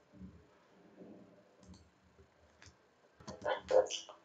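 Clicking at a computer: a few faint scattered clicks, then a quick run of louder clicks in the last second.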